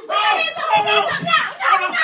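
Loud raised voices shouting, with no words that can be made out.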